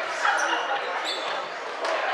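Echoing chatter of voices in a sports hall, with a few sharp knocks of a basketball bouncing on the wooden floor and brief high squeaks.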